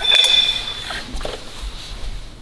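Metal brake parts clinking against a steel platform scale as a brake disc and caliper are swapped on it: a sharp clink at the start, a high ringing note that dies away within about a second, then a few lighter knocks.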